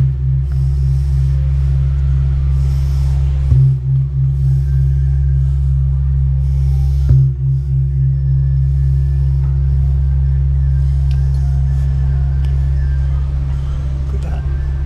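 Large hanging temple gong struck three times with a padded mallet, about three and a half seconds apart. Each strike renews a long, low, pulsing ring that carries on between the strokes.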